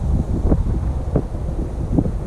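Wind buffeting the camera microphone: a loud, steady low rumble, with two brief knocks about half a second and a second in.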